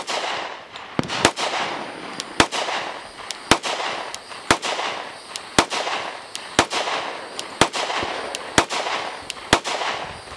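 Compact Glock pistol firing slow, deliberate shots, about one a second and roughly ten in all, each sharp report followed by a short echoing tail across the range.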